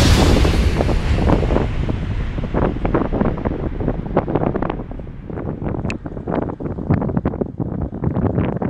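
An aircraft passing and receding, its noise fading as the high end dies away over the first few seconds. Wind buffets the microphone in gusts.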